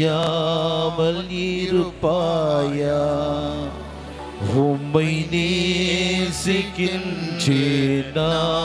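A man singing a slow devotional chant, holding long notes that glide up and down, with short breaks between phrases.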